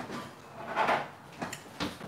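A few short knocks and clatters of things being handled at a kitchen counter, the loudest a little under a second in.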